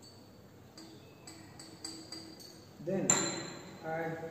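Glass pipette clinking against a glass conical flask: light ticks with a thin ring about three a second, then one louder clink near the end.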